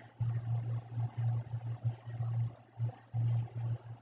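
A low hum that keeps cutting in and out, over faint hiss, with no speech.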